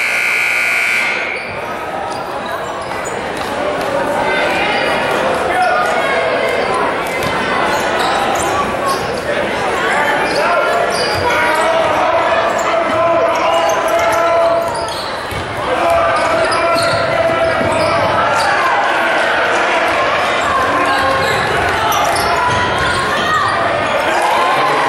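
Basketball being dribbled and sneakers on a hardwood gym floor under constant crowd chatter that echoes in the large hall. It opens with a short, high, steady signal tone lasting about a second and a half.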